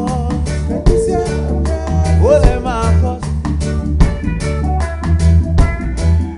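Live reggae band playing, with a deep bass line under a steady rhythm. Voices sing in harmony during the first half.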